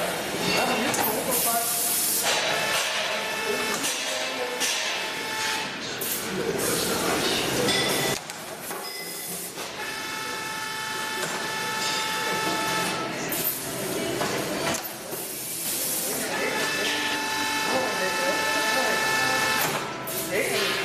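Two-head automatic bag-filling machine working: bursts of hissing mixed with a steady multi-tone whine that comes and goes.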